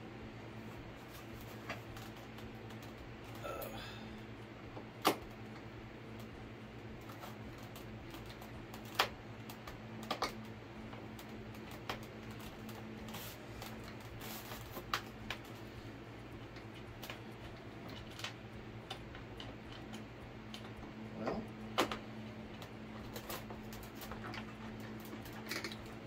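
Scattered small clicks and taps of a screwdriver and screw against a model airplane's plastic and foam fuselage as a screw is worked in and out, trying to get its threads to catch. The clicks are irregular, a few seconds apart, over a steady low hum.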